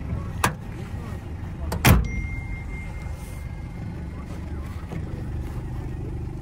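A sharp click, then a louder thump just before two seconds in, from the SUV's door and fittings being handled, over a steady low outdoor rumble.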